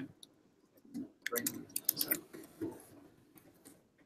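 A quick run of sharp clicks and taps close to the microphone, thickest between about one and two and a half seconds in, over a faint murmur of voices in the room.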